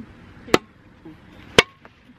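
Two sharp smacks about a second apart, the second louder: hollow toy plastic bats swung at tossed horse treats.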